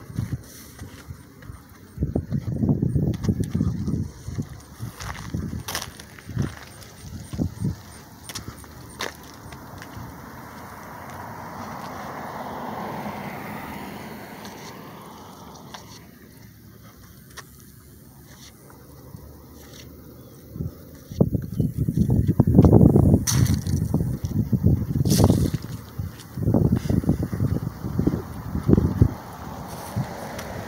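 Street traffic: a car passes, its tyre and engine noise swelling and fading about halfway through. Loud, irregular bursts of low rumble come early on and over the last third.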